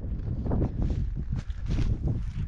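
Wind buffeting the microphone in a steady low rumble, with a few brief scuffs and crunches.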